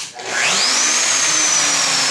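A switch clicks and a modified Festool shop vacuum starts up: its motor whine rises steeply to a peak about a second in, then eases slowly downward while the steady rush of the motor and airflow carries on.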